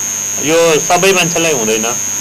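Steady electrical mains hum with a constant high-pitched whine, under a man speaking from about half a second in.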